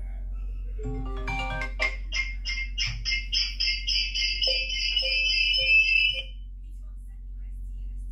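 iPhones ringing with incoming FaceTime audio calls: a few marimba-like ringtone notes, then a rapid, even, high-pitched pulsing ring at about three to four beats a second that cuts off abruptly about six seconds in.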